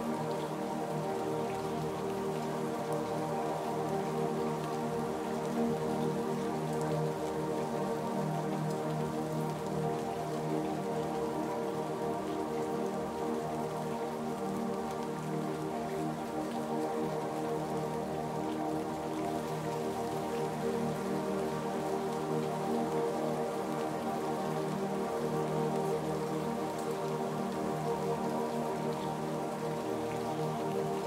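Steady rainfall mixed with slow ambient music of long, held notes; the rain and music go on evenly throughout with no sudden sounds.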